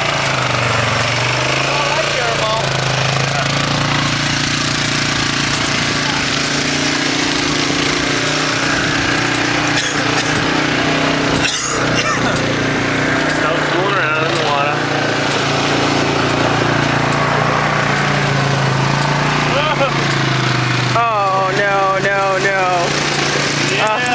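ATV engine running, its pitch rising and falling several times over a loud steady noise.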